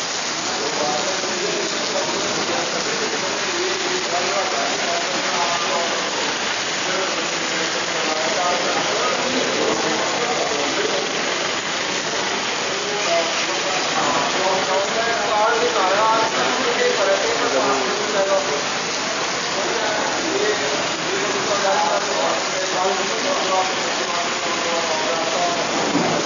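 Heavy rain pouring onto a waterlogged road, a constant dense hiss, with indistinct voices talking underneath.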